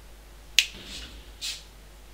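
A single sharp finger snap, followed about a second later by a shorter, softer burst of hiss.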